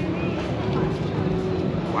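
Outdoor crowd ambience: a background murmur of distant voices over a steady low hum, with a man saying "wow" right at the end.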